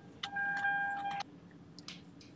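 A steady electronic tone, held for about a second, starts with a click and cuts off suddenly over a faint low hum; a few faint clicks follow.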